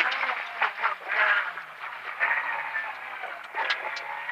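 Rally car engine heard from inside the cabin at stage pace, its pitch rising and falling through the bends, with a few short sharp clicks.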